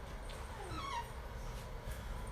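Interior door hinge squeaking as the door swings open: one short, wavering squeal that rises in pitch, about half a second in.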